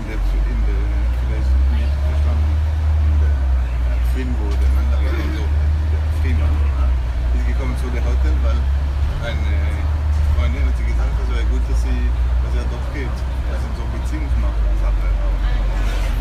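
Deep, steady rumble of a London double-decker bus's engine and drivetrain, heard on board, swelling at the start as the bus pulls away from a stop. Passengers talk over it throughout.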